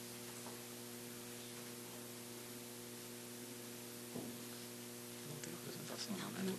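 Steady low electrical mains hum with faint hiss from the sound system, with a faint soft bump about four seconds in.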